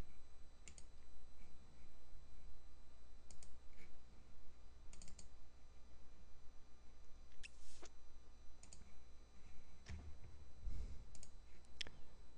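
Irregular computer mouse clicks and a few keyboard taps, a dozen or so scattered sharp clicks, over a low steady hum.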